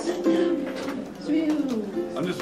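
A few held musical notes between songs, the last one sliding down in pitch, with a little low chatter.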